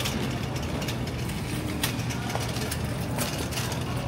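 A shopping trolley rolling over a tiled supermarket floor: a steady low rumble with scattered rattles and clicks.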